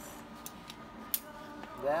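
Steel T-hinges clinking against each other and the concrete floor as they are laid out by hand: a few light metallic clicks, the sharpest about a second in.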